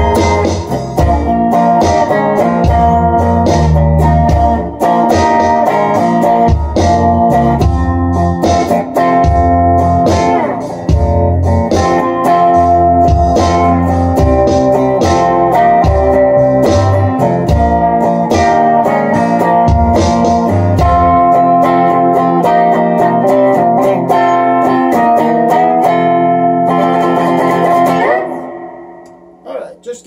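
Six-string cigar box guitar with a twin-rail humbucker pickup, played straight with no effect pedals through a small Fender amp: a picked riff with heavy low notes for most of it, then chords, and a last chord that rings out and fades near the end.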